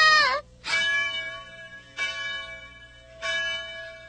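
A tower clock bell tolling three times, about one and a quarter seconds apart, each stroke ringing on and fading. Before the first stroke, a girl's sobbing wail trails off within the first half-second.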